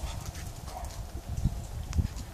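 Steps and light knocks on paved ground over a low rumble, with one sharp click near the end.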